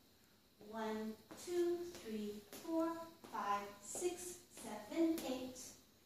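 A woman's voice speaking in short phrases, calling out line-dance steps and counts.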